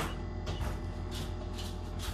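Steady low hum of an egg incubator's fan running, with a few faint brief rustles.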